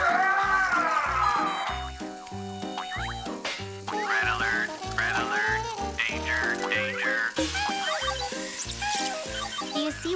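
Bouncy cartoon background music with a regular bass beat, with sliding, warbling sound effects of wind-up toy robots and a toy gorilla over it.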